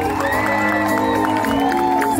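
A live band playing on stage through the sound system, heard from among the audience, with long held notes over a steady accompaniment.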